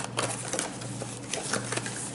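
Cardboard cosmetics box and its paper insert being handled and opened: an irregular run of short clicks and scuffs of paperboard.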